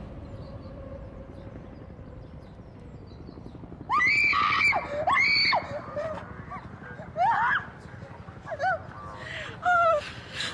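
A woman screaming in anguish. After a few quiet seconds come five separate cries that rise and fall in pitch, the first two the longest.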